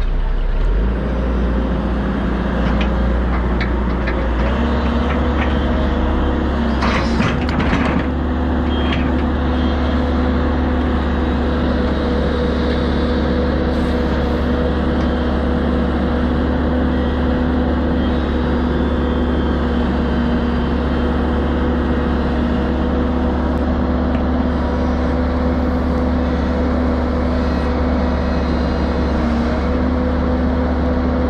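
Crawler excavator's diesel engine running steadily with a low rumble, its pitch stepping up about four seconds in as it works. A few short knocks come about seven to eight seconds in.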